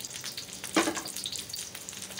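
Whole garlic cloves sizzling and crackling in hot cooking oil in a stainless steel wok, stirred with a wooden spatula. There is one louder clack a little under a second in.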